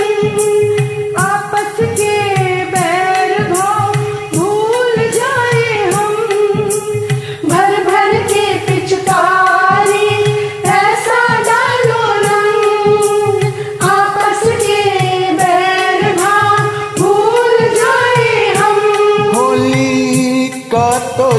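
A Hindi Holi song: singing over keyboard-arranged backing music with a steady percussion beat.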